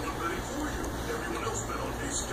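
A television playing in the background: faint, indistinct voices with some music, over a steady low hum.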